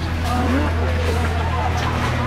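Faint voices of people talking over a steady low hum.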